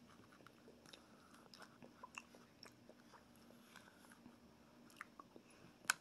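Faint eating sounds, soft clicks of a metal spoon and mouth as gelatin dessert is eaten, with one sharper click just before the end.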